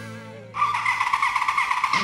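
Closing theme music opening with a motorcycle engine at high revs: a steady, high-pitched engine note comes in about half a second in and holds.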